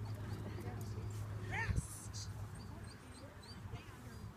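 Indistinct, low-level talking over a steady low hum, with a short rising call about halfway through and faint high chirps later on.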